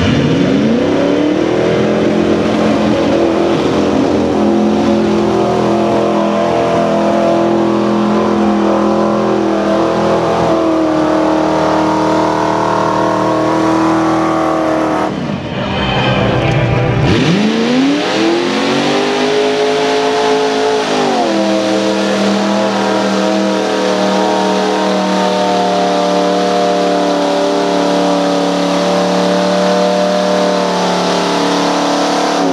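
Lifted four-wheel-drive trucks' engines revving hard and held at high revs while the trucks drive through a deep mud pit. The revs climb at the start, break off briefly about halfway, then climb again and hold steady.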